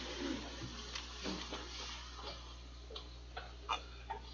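A congregation getting to its feet from padded chairs: scattered shuffling, light knocks and a few short squeaks over a steady low room hum.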